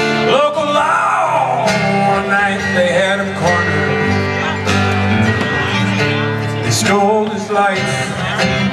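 Live country band playing an instrumental break: guitars, bass and drums, with a lead line that bends and wavers in pitch about a second in and again near the end.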